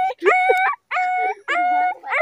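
A boy imitating a dog with his voice: about four drawn-out, dog-like calls in quick succession, each about half a second long and held at one even pitch.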